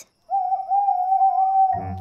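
Cartoon owl hooting: one long, steady hoot, the strange night-time noise heard from inside the tent.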